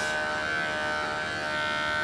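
Electric hair clippers running with a steady, even hum while trimming the curly hair around a poodle's ear.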